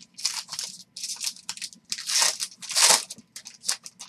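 Foil trading-card pack torn open by hand: a run of crinkling rips of the wrapper, the loudest two about halfway and three-quarters through.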